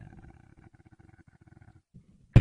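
Faint, low rattling growl made in a beatboxer's throat into the microphone, stopping shortly before the end.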